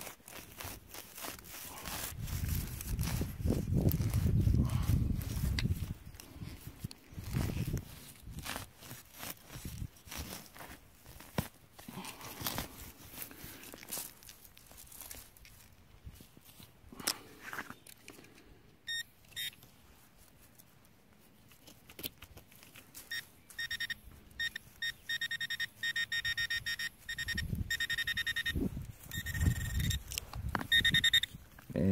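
Digging a hole in soil with a hand tool: scattered scrapes and knocks of dirt and roots. From about three-quarters of the way through, a metal detector beeps in rapid repeated high pulses as it is worked over the target in the hole.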